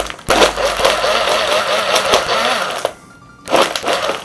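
Personal blender motor running under load as it churns ice into a frozen cocktail, its pitch wavering. It is pulsed: it cuts out briefly about three seconds in, then starts again.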